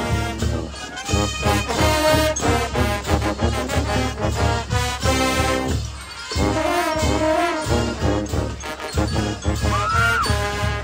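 A marching band's brass section (sousaphones and trumpets) playing a lively tune over a steady low beat. The sound drops briefly about six seconds in, then picks up again.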